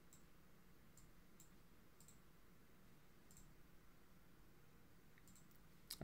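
Near silence broken by several faint, sharp computer mouse clicks, scattered irregularly through the few seconds.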